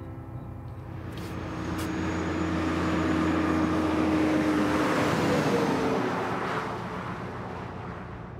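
A semi-truck driving past on a highway: engine hum and road noise build up, are loudest about halfway through as the engine's pitch drops, then fade away.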